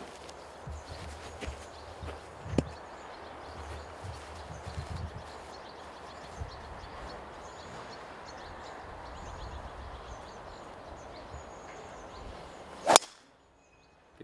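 Golf driver striking a ball off the tee: one sharp, loud crack near the end. Before it there is only faint background noise, with a small click about two and a half seconds in.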